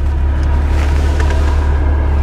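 Cabin drone of a stage-2-tuned BMW M135i's turbocharged inline-six with a modified exhaust, running steadily: a deep, even rumble with no change in revs.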